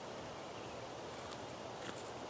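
Faint, steady outdoor background: an even hiss with no distinct sound event.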